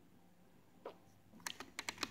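Quiet room tone, then a quick run of light, sharp clicks in the last half second from the toy dinosaur figures being handled.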